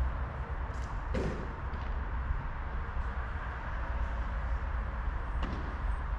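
A few sharp knocks of a padel ball off rackets and the court: the loudest about a second in, another near the end. Under them runs a steady low rumble.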